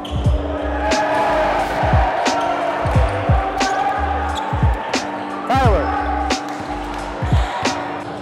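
Basketballs bouncing on a gym floor in repeated sharp knocks, with a haze of crowd chatter behind them. Background music with a pulsing bass beat runs over it all.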